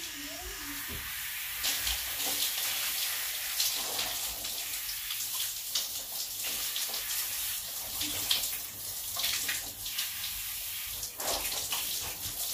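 Water running and splashing in a shower, a steady hiss broken by uneven splashes.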